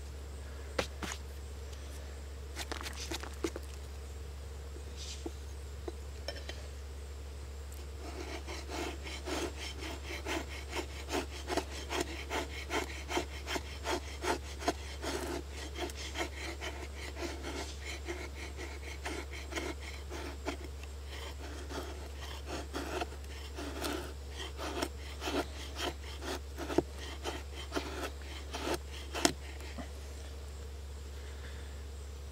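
The carbon-steel blade of a large chopper knife shaves a stick of fatwood, scraping off curls in short repeated push strokes. A few scattered scrapes and clicks come first, and from about eight seconds in the strokes run quickly at about two a second.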